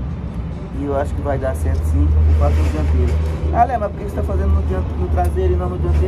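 Motor vehicle engine idling, a low steady rumble that grows louder about two seconds in, with voices and music in the background.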